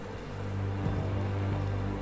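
Tense, ominous background music: a low sustained drone with steady held tones.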